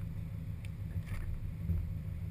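A 2005 Subaru WRX STI's turbocharged flat-four idling with a steady low hum, with faint rustling and shuffling as the driver climbs into the seat.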